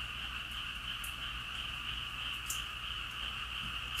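Steady night chorus of frogs and insects calling, an even high-pitched drone that never breaks, over a faint low hum.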